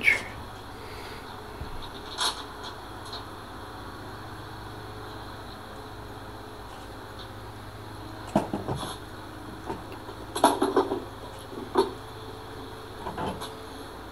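Scattered light knocks and clinks of metal hardware as a hand winch is handled and set down on a steel trailer tongue, most of them in the second half, over a steady low hum.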